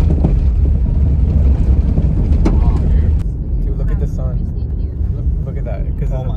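Loud, low rumble of a car in motion, heard from inside the cabin. Faint voices talking can be heard from about four seconds in.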